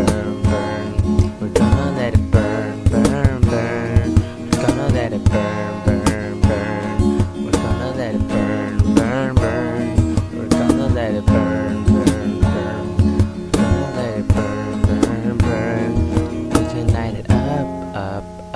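Acoustic guitar strummed in a steady rhythm, with a man's voice singing a melody over it without clear words.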